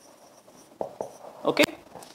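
Marker pen writing on a whiteboard, faint strokes followed by two short clicks as the word is finished, then a brief spoken "okay".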